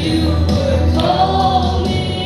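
Church congregation singing a gospel worship song, many voices together over a steady instrumental bass accompaniment.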